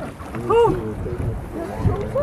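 A short, high voice sound that rises and falls about half a second in, over a steady low rumble of boat and wind.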